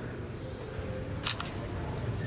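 A single-lens reflex camera's shutter firing once, a quick double click a little over a second in, over a low, steady room background.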